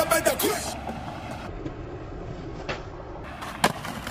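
Skateboard rolling on concrete, a steady low rolling noise, with two sharp clacks of the board, the second and louder one a little before the end.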